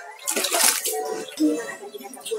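A hand swishing water in a plastic tub, with a brief splash about half a second in.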